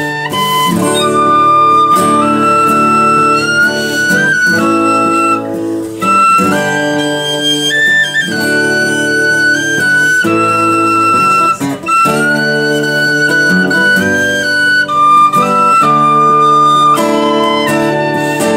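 An end-blown flute plays a melody in held, stepping notes over acoustic guitar chords, with no singing.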